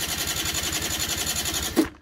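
Peugeot scooter's electric starter cranking its air-cooled engine on power jumped from a car battery: a steady, rapidly pulsing churn that cuts off near the end without the engine catching.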